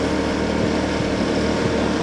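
Motor scooter running steadily under way, its engine hum mixed with road and wind noise.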